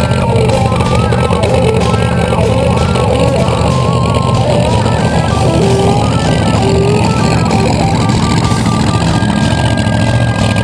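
Nostalgia funny car engine idling steadily with a loud, deep rumble as the car rolls slowly on the drag strip.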